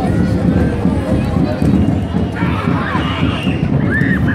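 A crowd of many people talking over one another, with a constant low rumble beneath the voices; one voice rises louder about halfway through.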